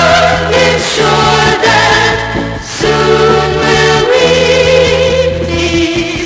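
Music from a vocal group's album: several voices singing in harmony over instrumental backing, with held chords and a bass line that moves every second or so.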